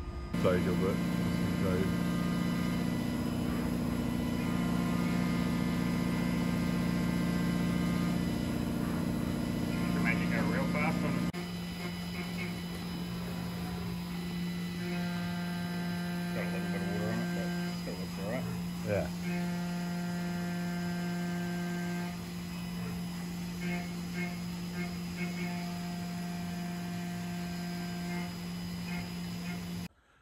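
CNC milling machine cutting an aluminium block: a steady hum with higher whining tones that come and go in stretches of several seconds. The sound changes abruptly about eleven seconds in.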